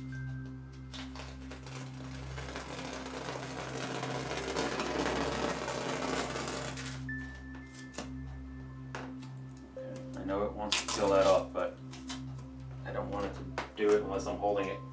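Masking tape being peeled off a painted canvas: a long tearing noise that builds for about six seconds and then stops abruptly, over soft background music with sustained tones. Brief low speech follows near the end.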